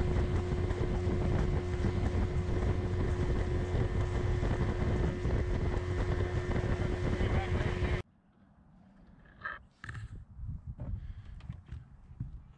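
A boat motor running steadily under wind noise on the microphone. It cuts off suddenly about eight seconds in, leaving a much quieter stretch with a few faint knocks.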